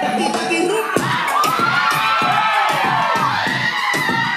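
A small group of onlookers cheering, shouting and whooping over a dance track with a steady beat.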